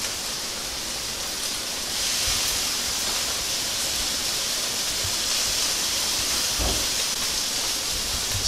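Okra and spicy peppers sizzling in hot grapeseed oil in a stainless steel skillet: a steady hiss that grows a little louder about two seconds in.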